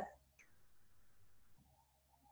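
Near silence: a soft click, then a faint breath lasting about a second.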